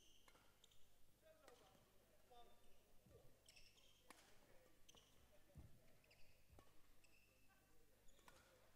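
Faint badminton rally: a series of sharp racket hits on the shuttlecock about once a second, with short high squeaks of court shoes and a few dull thuds of feet landing on the court.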